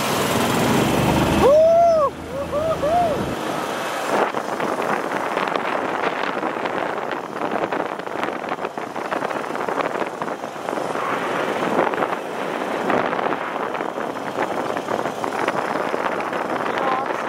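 Cushman utility cart driving, with steady rattling and road noise as it rolls along.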